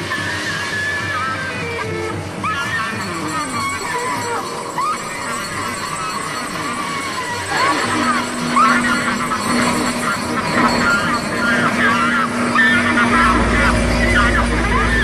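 Club dance music playing over a crowd's voices. A steady held note comes in about eight seconds in and a deep bass enters near the end, and the music grows louder.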